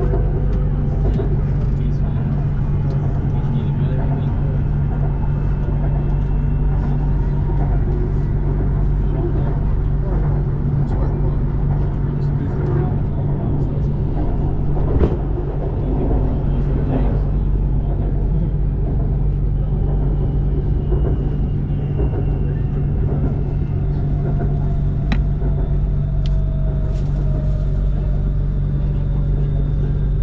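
Electric metro train running on an elevated track, heard from inside the car: a steady low drone with a faint motor whine that slides in pitch. About halfway through, a train on the other track passes with a brief surge.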